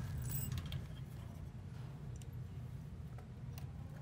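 Quiet handling noise: a few faint scattered metallic clicks as the gas furnace's gas valve, manifold and wiring are handled, over a low steady hum.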